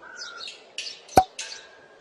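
Birds chirping in short, high, scattered calls, with a single sharp click just past the middle.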